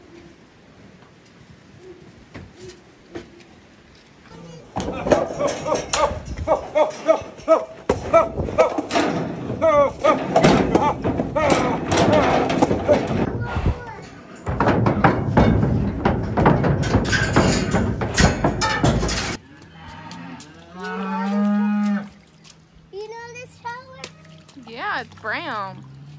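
Cattle bawling and mooing while being worked through steel pens, with dense knocking and clatter through a long stretch after a few quiet seconds. Near the end comes one long, low moo.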